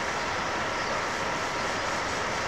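Steady static-like hiss, unchanging throughout, with a faint thin steady tone running through it; no voices are heard.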